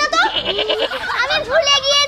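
Speech: a woman talking in an emotional, strained voice.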